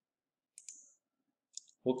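Two quick computer-mouse clicks about half a second in, advancing a presentation slide, followed by a few fainter clicks. A man starts saying 'Okay' right at the end.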